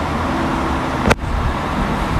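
Steady low rumble and hiss of background noise on a voice recording, with one sharp click and a momentary dropout about a second in, where the recording is cut.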